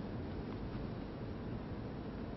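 Steady, even hiss of room tone in a quiet snooker hall, with no ball strikes.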